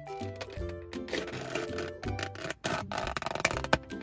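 Background music, over which a plastic takeaway container's lid is pried open: crackling plastic about a second in and again later, ending in a sharp snap near the end.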